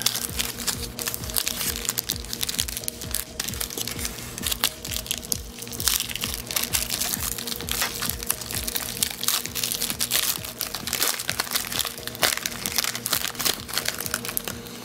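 Foil candy-bar wrapper and plastic card-pack wrapper crinkling and crackling as hands work them open, over background music with a steady beat.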